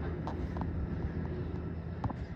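A steady low rumble of distant vehicles, with a few faint short clicks over it.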